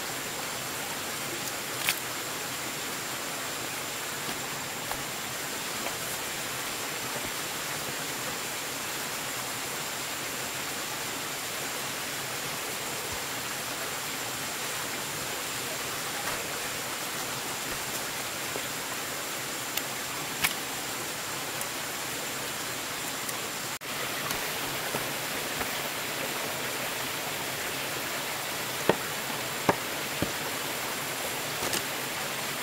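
Steady, even rushing outdoor noise with a faint constant high-pitched whine, broken by a few isolated soft knocks: once about two seconds in, again around twenty seconds and near the end.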